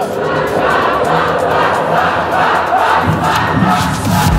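Audience shouting and cheering, many voices at once.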